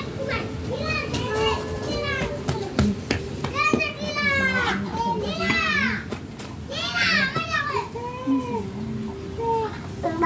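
Children playing, shouting and squealing in high voices, with the loudest shrieks about four, five and a half and seven seconds in.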